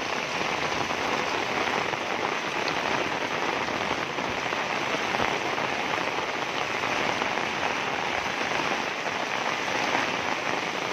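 Heavy rain falling steadily on a paved lane and on standing floodwater, an even, unbroken hiss of drops striking the wet ground and water.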